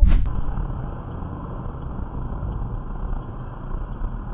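Steady car engine and road noise from a dashcam recording, muffled and heavy in the bass. It begins with a sharp knock at the very start.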